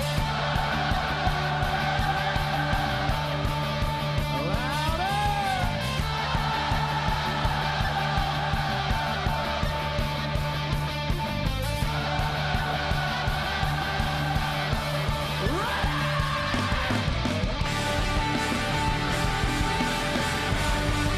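Live rock band playing, with electric guitars over a steady beat and sustained tones, and pitch glides about five and sixteen seconds in.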